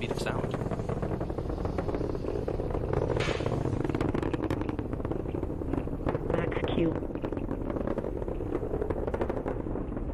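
Falcon 9 first stage in ascent, its nine Merlin 1D engines making a steady low rumble with a crackle of sharp pops. A brief radio call-out on the launch control net, the Max-Q call, cuts in about two-thirds of the way through.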